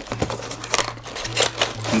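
Clear plastic clamshell packaging crinkling and cardboard rubbing as the insert is slid out of an opened cardboard box, in a run of irregular quick crackles.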